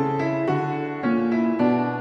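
Background music with a piano-like keyboard melody, new notes struck about twice a second.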